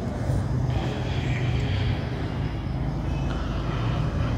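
A steady low rumble with faint background noise.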